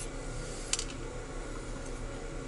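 A faint steady hum, with a single light click about three-quarters of a second in as tweezers pick a pin out of a brass lock plug.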